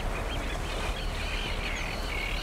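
A flock of wild birds calling, many short overlapping calls at once, over a steady low rumble.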